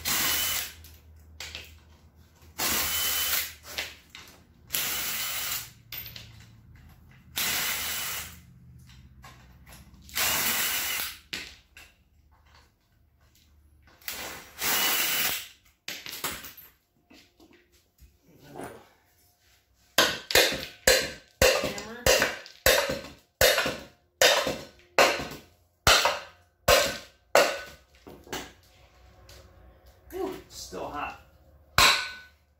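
Cordless impact driver zipping out the bottom-cover bolts of an old Tecumseh small engine in about six separate bursts of a second or so each. In the last third comes a quick run of sharp knocks, about two a second.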